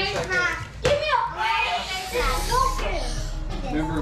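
Children's voices talking and exclaiming over music, with a stretch of hissing noise in the middle.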